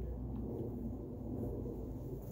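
Honda EB12D enclosed diesel generator running, a steady low hum.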